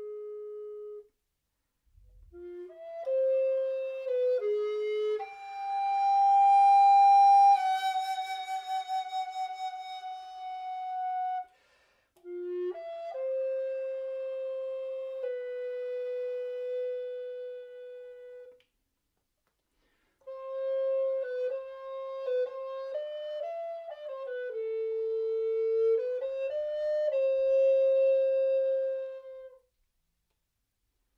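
Tenor recorder playing slow, sustained phrases, one note at a time, with short pauses between them. A crescendo builds to a loud, high held note about six seconds in, which then steps slightly down and fades, followed by two more phrases of long held notes.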